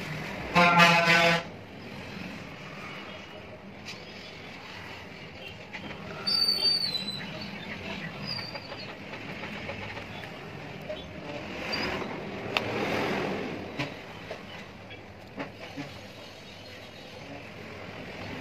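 Background traffic with a vehicle horn sounding once for about a second near the start. A short high chirp comes about six seconds in, and faint clicks come from laptop parts being handled.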